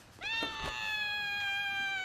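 A woman's long, high-pitched wail, starting about a quarter second in and held on one slightly falling note.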